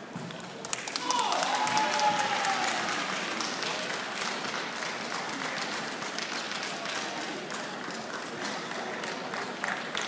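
Spectators applauding: dense clapping breaks out about a second in, is loudest for the next couple of seconds, then eases into steadier, thinner clapping. A voice calls out briefly as the applause begins.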